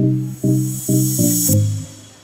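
Background music of plucked, guitar-like notes, about five struck in quick succession. A hissing swoosh sound effect sits over them and cuts off suddenly about a second and a half in.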